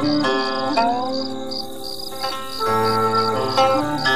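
Instrumental background music: a plucked-string melody with notes that bend in pitch, over a high pulsing tone that repeats about four times a second.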